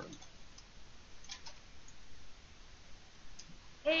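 A few faint, scattered clicks and taps over quiet room tone.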